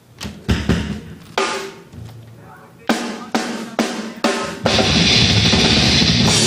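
Drum kit struck in a handful of separate hits with cymbal crashes, like a lead-in between songs. About four and a half seconds in, the full metal band comes in together, loud and dense, with drums and distorted guitars.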